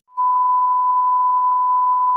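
Test tone of a colour-bars test signal: one steady, unchanging beep at a single pitch, starting a moment in and holding.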